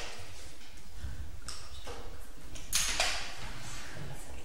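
Laboratory glassware being handled at a bench: a few brief scraping swishes, the loudest about three seconds in, over a low steady room rumble.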